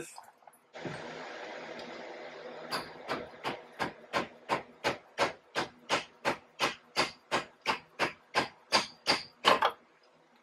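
Repeated metal-on-metal hammer strikes, about three a second and some twenty in all, knocking a Toyota Tacoma's front CV axle loose from the front differential; the last few strikes are the loudest. About two seconds of steady hiss come before the strikes.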